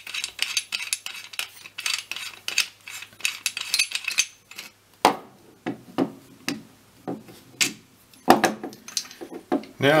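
Telescope eyepiece being unscrewed by hand: a dense run of fine scraping clicks from the threads for about four seconds. Then come scattered clicks and knocks as it comes free and is handled.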